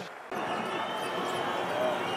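Steady crowd noise from spectators in a basketball arena, starting just after a brief dip at the very start.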